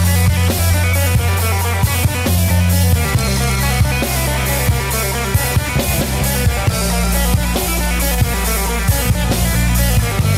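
Live instrumental rock by a band of drum kit, bass guitar, guitar and hand percussion, with a steady beat and long held bass notes that change pitch about three seconds in and again near seven seconds.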